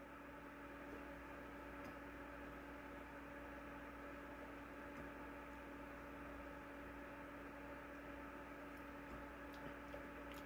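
Quiet room tone: a faint steady hum, with a few faint clicks, one about two seconds in and two near the end.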